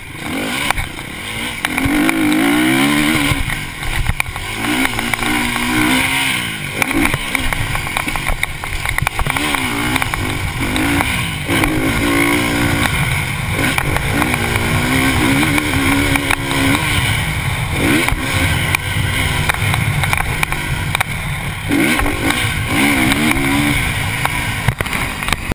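KTM motocross bike engine revving hard and backing off again and again as the rider works the throttle around the track and over jumps, its pitch climbing and dropping every second or two.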